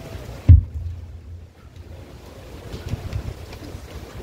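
A single low thump about half a second in, then a low rumble: handling and wind noise on a handheld microphone.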